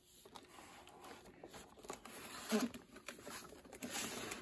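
Rustling and light tapping from a cardboard toy display box being handled, with a short laugh about two and a half seconds in.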